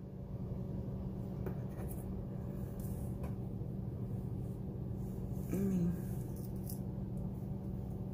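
Steady low hum of a home heater running, with a few faint light clicks and scrapes as a metal bottle-opener tool is handled over a scratch-off lottery ticket.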